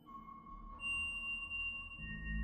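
Mutable Instruments modular synthesizer playing slow, sustained pure tones: a new tone enters right at the start and a second, higher one comes in just under a second later, over a low undertone that builds.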